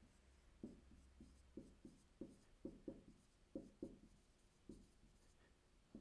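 Marker writing on a whiteboard: about a dozen faint, short strokes over roughly four seconds, then stopping.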